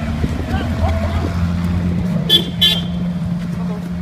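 Ferrari LaFerrari's V12 engine running steadily at low revs as the car pulls away slowly. Two short high-pitched toots come about two and a half seconds in.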